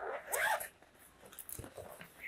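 Zipper on a fabric tripod carry bag being pulled open. A brief sliding vocal sound comes in the first half second.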